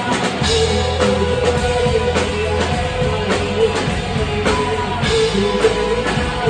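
Live rock band playing: drum kit beating a steady rhythm under electric guitars.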